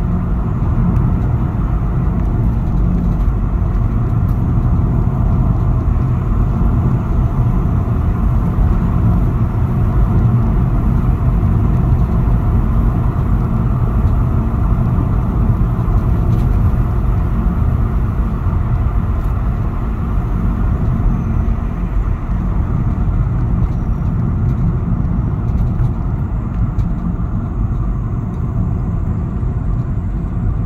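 Car driving along a paved country road, heard from inside the cabin: a steady low rumble of tyres on asphalt and the engine.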